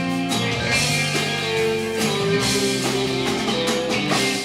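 Rock band playing live: electric guitars, bass, drums and keyboards in an instrumental passage with no vocals, sustained chords and held notes over a steady groove.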